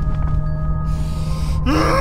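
Film soundtrack: a low steady drone under faint held tones. Near the end a loud, pitched wail cuts in, sliding up in pitch and then holding.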